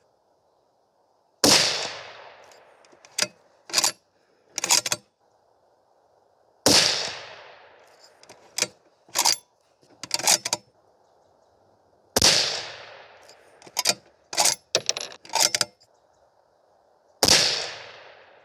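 Four rifle shots from a bolt-action precision rifle, about five and a half seconds apart, each trailing off in an echo lasting a second or more. Between shots come short clicks of the bolt being worked to eject the spent case and chamber the next round.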